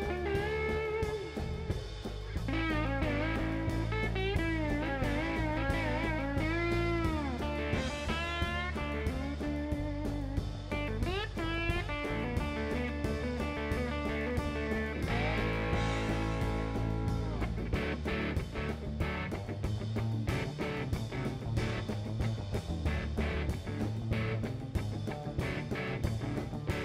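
Blues band playing an instrumental passage: a lap steel guitar takes the lead with sliding, wavering notes over electric bass and drum kit. The drum beat comes forward in the second half.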